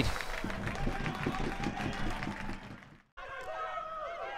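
Football ground ambience: faint crowd murmur with distant shouting voices from the pitch and stands. It drops out briefly about three seconds in, then resumes much the same.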